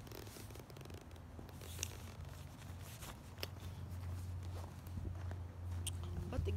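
Rustling of a quilted nylon jacket and handling noise against a phone's microphone, with a few sharp clicks, over a low steady rumble that grows stronger in the second half.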